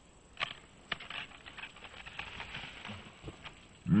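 A board rolling and scraping down a dirt slope, with irregular crackling and two sharp knocks in the first second and a smaller one later. Deep laughter breaks in just before the end.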